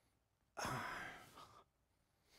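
A man's breathy exhale, voiced faintly as "uh", starting about half a second in and lasting about a second.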